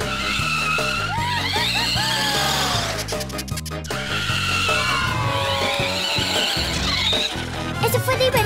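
Upbeat background music with car sounds from a radio-controlled toy monster truck driving, including two long sweeping skid-like sounds, one early and one later.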